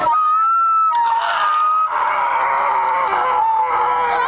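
Long, high held wailing cries from a person's voice, stepping from one pitch to another, over crowd chatter.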